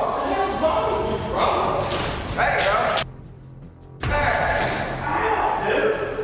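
Men's voices over background music with a steady bass line, dropping into a brief lull and then broken by a sudden thud about four seconds in.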